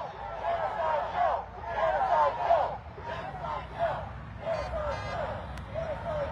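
Voices of people talking in the background, not close to the microphone, over a steady low rumble of traffic.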